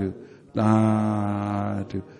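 A Buddhist monk's voice chanting slowly, holding one long syllable at a steady low pitch for over a second after a short pause.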